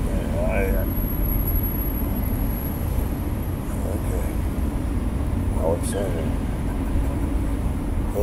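Steady low rumble of a car heard from inside its cabin, with faint snatches of a voice near the start and about six seconds in.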